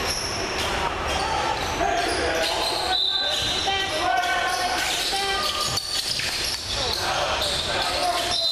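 Live basketball play on a hardwood gym court: the ball bouncing, many short high sneaker squeaks, and players' voices calling out, all echoing in a large hall.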